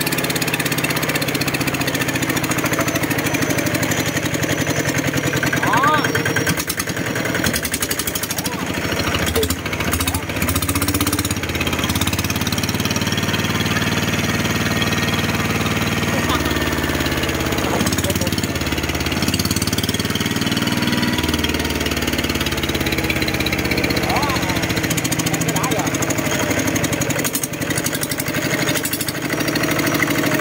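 Kubota ER65 single-cylinder diesel engine running steadily. Its exhaust tone shifts partway through as lengths of pipe are tried on the exhaust outlet.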